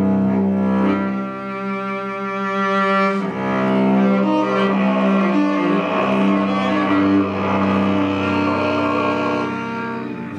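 Solo cello played with the bow: long sustained notes moving over a steady lower note, with one long held note about a second in.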